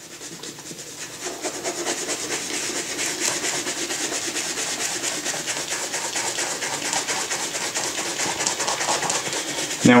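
Rubber bristles of a suede brush scrubbing suede cowboy-boot leather in quick, even back-and-forth strokes, agitating the nap to work out hard dirt deposits.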